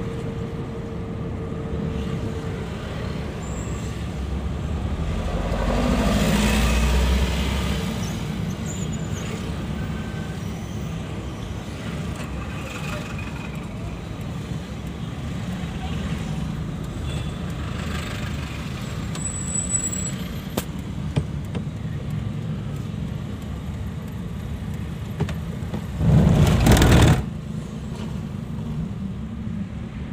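Steady engine and road rumble heard from inside a car moving through city traffic. The rumble swells louder about six seconds in, and a loud burst of noise lasting about a second comes near the end.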